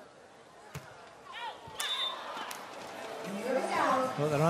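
Beach volleyball rally: a volleyball is struck with a sharp smack about three quarters of a second in, with a second, fainter hit around two and a half seconds. Short voices or shouts come in between, and a commentator's voice starts near the end.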